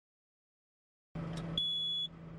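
After a second of silence, the low hum of the idling diesel engine comes in. About one and a half seconds in, the excavator cab's warning buzzer starts a steady high-pitched beep. The beep signals that the quick fit's locking wedge has been pulled out and the attachment is unlocked.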